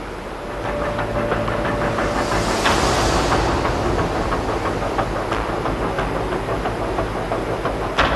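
Ambient sound of a press event under the news footage: a steady rumbling hiss with many scattered sharp clicks, and a brief higher hiss a couple of seconds in.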